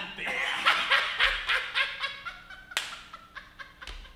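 Hearty laughter in quick repeated ha-ha pulses, loudest in the first two seconds and then fading, with one sharp smack a little under three seconds in.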